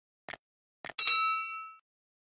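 Subscribe-button animation sound effect: two short mouse clicks, then a bright bell ding about a second in that rings for just under a second.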